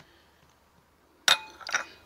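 Porcelain teacup set down on its saucer: one sharp clink about a second and a quarter in, with a brief ring, then a couple of lighter clinks as it settles.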